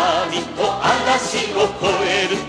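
Late-1970s Japanese anime theme song playing from a vinyl record: sung vocals with vibrato and a backing chorus over a full band.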